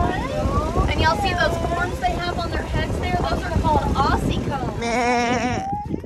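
People's voices exclaiming and laughing over a low rumble. Near the end comes one short, quavering high-pitched call.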